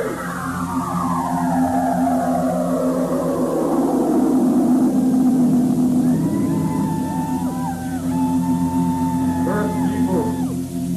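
Synthesized sci-fi sound effects imitating a UFO coming overhead: a long falling swoop over the first few seconds settles into a low steady drone, then warbling, bending tones join in from about six seconds on.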